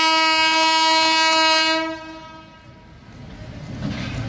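Air horn of an approaching WAP-7 electric locomotive sounding one long, loud, single-pitched note that cuts off about two seconds in. A low rumble of the oncoming train builds toward the end.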